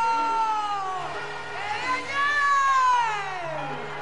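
A llanero singer's two long, high held vocal cries, each sliding down in pitch at its end, over faint steady backing music.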